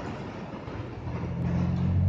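Busy city street traffic: a steady din of road noise, with a vehicle's low engine drone building and growing louder from about a second in.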